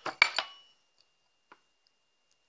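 Small metal screws clinking against a small metal tin: a few sharp, ringing clinks in the first half second, then a couple of faint ticks.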